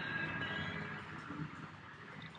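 Faint coffee-shop background noise: a low steady room hum with faint thin tones from the room, a little louder in the first second.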